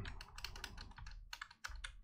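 Computer keyboard being typed on: about a dozen faint, light key clicks as a number is keyed into a spreadsheet cell.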